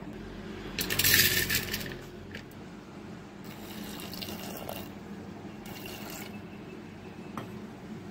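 Water being poured and splashed in a vessel, in three short bursts, the first the loudest.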